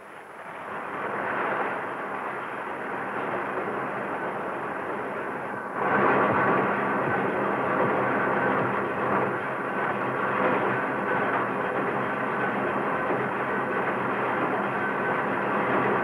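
Lake freighter's engine-room machinery running with a steady, dense mechanical noise. It is softer at first, then becomes abruptly louder about six seconds in.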